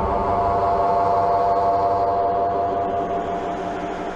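An eerie sound-design drone under a trailer's end logo: a dense held chord with one ringing tone standing out, slowly fading near the end.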